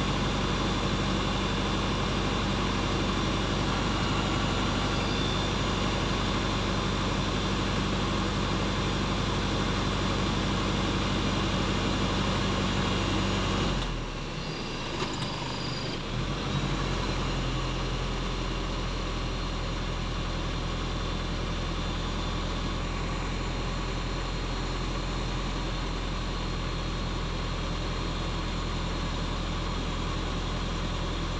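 Off-road 4x4 pickup engine idling steadily while stationary. About halfway through, the deep engine note drops out for about two seconds, then settles back into a steady idle at a slightly different pitch.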